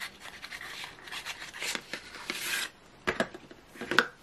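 A small cardboard colored-pencil box being opened by hand: a run of rubbing and scraping as the end flap is worked open and the pencils inside shift, lasting about two and a half seconds, then a couple of light clicks.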